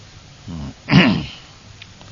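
A man clears his throat: a short low sound about half a second in, then a louder one about a second in.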